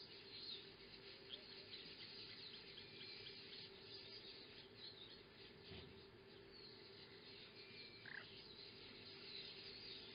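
Near silence: faint outdoor ambience with scattered high chirps and a steady low hum.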